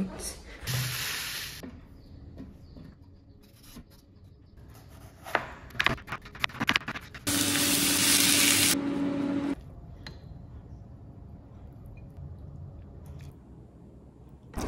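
Home stir-fry cooking: utensils clicking and scraping in a stainless steel pan of sliced onions, with a short hiss about a second in and a loud steady hiss of about a second and a half past the middle that cuts off suddenly.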